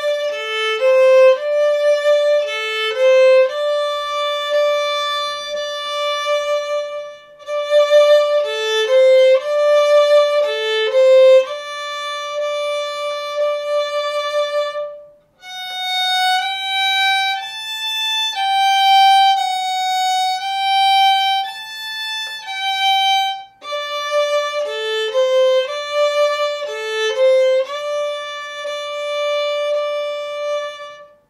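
Solo violin playing a slow fiddle tune in long, sustained bowed notes, with the low-second-finger note in the melody. The phrases are separated by short breaks, the middle phrase sits higher, and the opening phrase comes back in the last few seconds.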